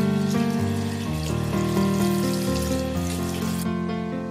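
Tap water running into a bathroom sink as someone splashes and washes their face, under background music; the water cuts off suddenly about three and a half seconds in.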